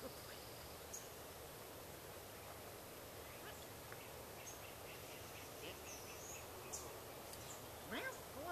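Quiet outdoor background hiss with a few faint, short, high bird chirps scattered through it.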